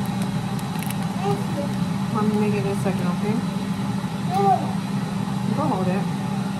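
A steady low hum from a kitchen appliance running, with faint children's voices and short high calls in the background.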